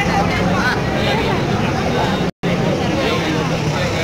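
Many people talking at once in an outdoor crowd, over a steady low hum. The sound cuts out completely for a split second just past halfway.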